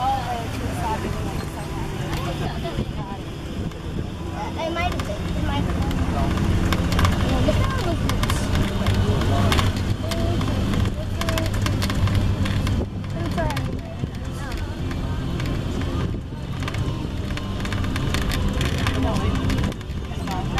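Open-sided passenger buggy driving along a paved path: a steady motor hum with rumble from the wheels and wind on the microphone, louder in the middle stretch.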